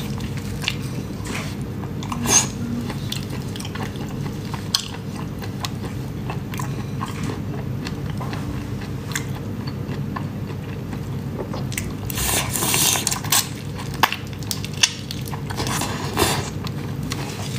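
Close-miked biting and chewing on whole shell-on prawns, with scattered sharp clicks and crackles of shell. Denser crackling comes near the end.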